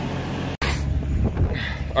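A tractor engine idling in a shop, cut off abruptly about half a second in. It is followed by a low, steady rumble of wind buffeting the microphone outdoors in a snowstorm.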